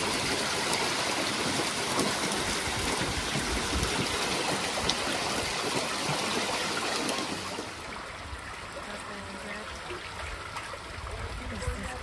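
Steady rushing and splashing of seawater, louder for about the first seven seconds and then dropping to a softer wash.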